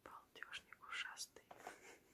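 Faint whispering: a person's breathy voice in short bursts, with no voiced tone.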